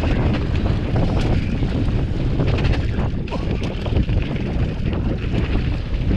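Wind buffeting the microphone over the continuous rumble of a hardtail cross-country mountain bike's tyres on a rocky gravel descent, with rapid clatter and knocks as the bike rattles over stones.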